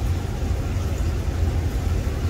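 A cooler running with a steady low hum and an even hiss over it.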